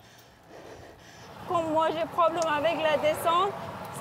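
A woman speaking French, starting about a second and a half in after a short stretch of quiet background.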